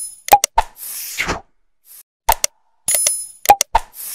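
Animated like-and-subscribe end-screen sound effects: quick clicks and pops, a short chime and a whoosh. The same sequence starts again about three seconds in.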